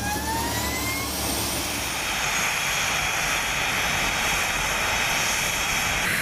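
Blue Angels F/A-18 jet's twin turbofan engines spooling up, their whine still rising in pitch over the first second. They then run steadily, with a high whine over a loud rushing noise.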